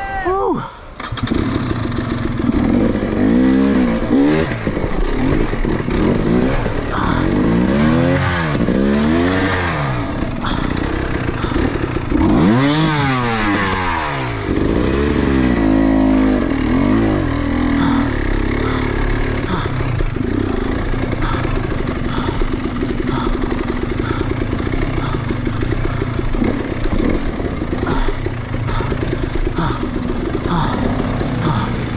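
Dirt bike engine revving up and down in repeated bursts while the bike is worked over rocks, then running more evenly for the last stretch.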